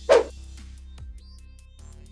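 Background music playing steadily, with one short, loud sound effect just after the start, as the countdown number card comes up.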